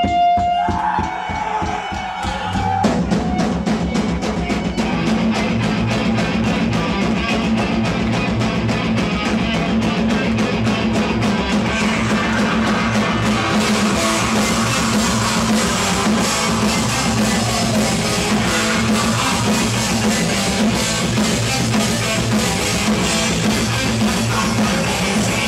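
Heavy metal band playing live: a held guitar note over drum hits opens the song, then the full band comes in about three seconds in with fast, even drumming under distorted guitars and bass.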